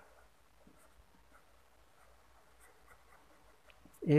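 Faint scratching of a pen writing a word on paper on a clipboard, in short, scattered strokes.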